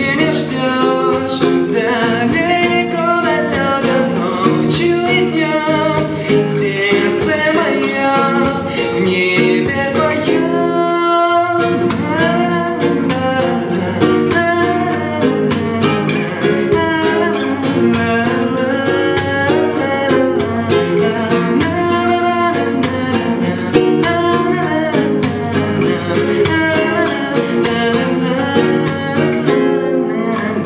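A nylon-string classical guitar strummed in a minor key, with a young man singing over it.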